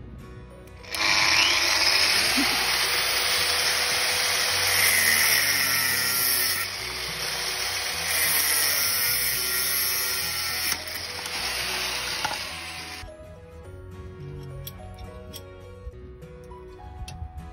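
Angle grinder cutting through a metal seat-runner bar to cut it in half. The cut starts about a second in, eases off in level a couple of times, and stops about 13 seconds in. Background music plays quietly underneath.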